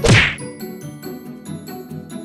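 A sudden whack-like transition sound effect at the start that falls in pitch over about half a second. Light, tinkling background music follows.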